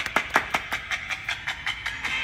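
A steady run of sharp clicks, about five or six a second, slowly fading.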